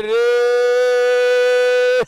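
A man's voice holding one long, steady high note: the race commentator drawing out a vowel in an excited call.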